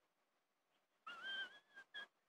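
A person whistling a short note about a second in, rising slightly in pitch, with a brief second toot just after.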